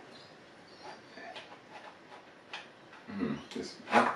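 Faint, scattered clicks and rubbing of hands working over a Yashica Electro 35 GSN rangefinder camera's metal body, trying to open its back to load film.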